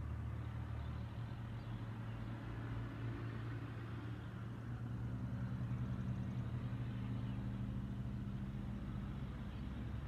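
A steady low engine hum, like a motor vehicle running nearby, swelling a little about halfway through.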